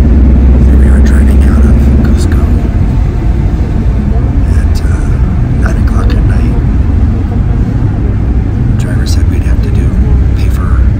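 Loud, steady low rumble of road and engine noise inside a moving vehicle's cabin.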